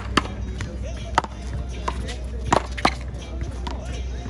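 Paddleball rally: a string of sharp, irregularly spaced smacks as paddles strike the rubber ball and it hits the wall, about seven over four seconds, the loudest right at the start and near the end.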